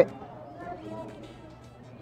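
Quiet background music with faint voices in the room; the sauce pouring onto the plate makes no sound of its own.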